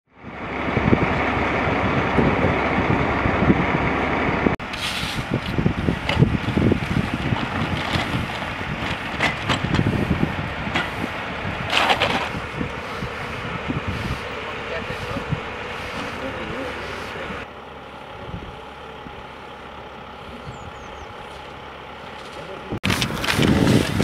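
Large vehicle engines running, with indistinct voices over a steady rumble. The sound changes abruptly twice, about four and a half seconds in and again late on.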